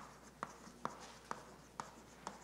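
Chalk writing on a blackboard: a string of sharp chalk taps, about two a second, with light scraping between them as a word is written.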